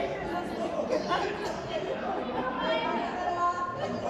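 Several people talking over one another in lively overlapping chatter.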